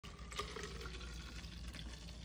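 Celery juice poured in a steady, quiet stream into a tall clear plastic cup, the cup filling up.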